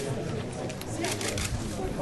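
Camera shutters firing in quick bursts of clicks, about ten a second, with a burst about a second in, over a murmur of voices.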